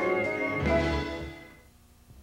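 Television program's closing theme music ending on a final chord struck under a second in, which rings out and fades away about a second and a half in.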